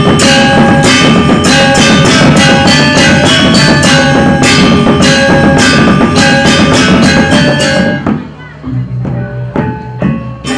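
Balinese gamelan playing loud, fast, dense struck metal tones with drumming; about eight seconds in it suddenly breaks off into a quiet passage of a few sparse strokes.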